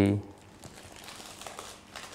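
Faint plastic crinkling and rustling as a syringe on a laryngeal mask airway's pilot balloon line is worked to deflate the mask's cuff.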